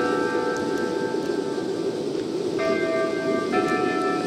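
A slow melody of sustained, bell-like chime notes, stepping to a new pitch about once a second, over the low steady rumble of a diesel railcar running slowly in on its approach.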